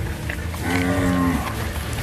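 Cattle mooing: one steady, flat-pitched moo about a second long in the middle, over a low steady rumble.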